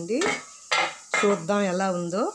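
Steel cookware clattering and scraping as the lid comes off a stovetop steamer pot, with a sharp metallic strike under a second in.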